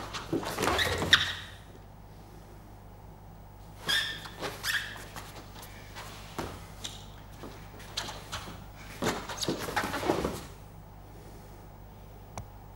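Two grapplers moving on a foam mat: scuffing, shifting and shoe squeaks come in three short bursts (at the start, about four seconds in, and about nine to ten seconds in), over a steady low electrical hum.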